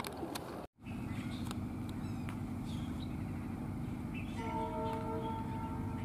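Short bird chirps over a steady low hum, with the sound cutting out briefly under a second in. From about four and a half seconds in, a long, steady call or tone with several pitches is held for over a second.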